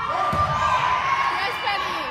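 Several voices shouting and calling at once during a volleyball rally, echoing in a gymnasium, with a low thud about a third of a second in from the ball being played.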